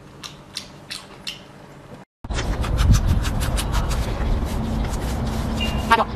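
Close-up eating sounds: a few crisp crunches while chewing, then after an abrupt cut, louder rapid crunching over a steady low rumble.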